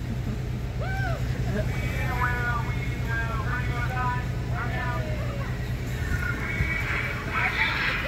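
Several voices calling out and whooping in short separate cries over a steady low rumble, with louder mixed shouting near the end.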